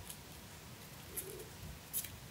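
Faint rustling and a couple of soft, brief clicks as green floral tape is wound around a beaded wire stem, over a quiet room hum.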